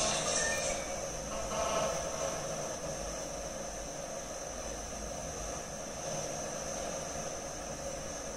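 Steady background hum and hiss with a thin, high, constant whine.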